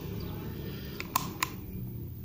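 Low steady room noise with three light handling clicks close together about a second in.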